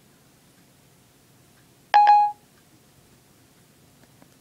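iPhone 4S Siri tone: one short electronic beep about two seconds in, the chime Siri gives when it stops listening and takes the spoken question. Otherwise quiet room tone.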